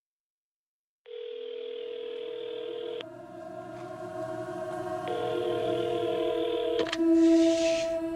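Telephone ringing tone heard through a handset earpiece: two steady electronic rings of about two seconds each, two seconds apart, each ending in a click. A low sustained music drone swells beneath them.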